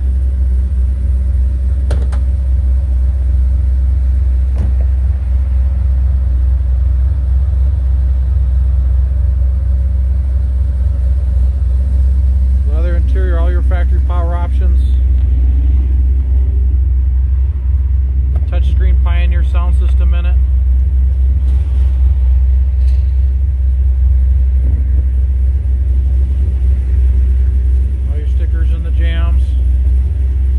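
2005 Ford Mustang GT's 4.6-litre V8 idling steadily, a deep, even rumble.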